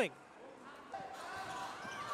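Faint basketball-arena background with a ball being dribbled on the hardwood court.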